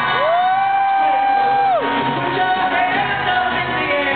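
Live pop-rock music in a concert hall: band and singing, with a loud high voice that slides up, holds one note for about a second and a half, then drops away.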